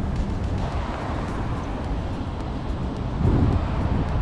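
Wind noise on the microphone over the rumble of city street traffic, growing louder about three seconds in.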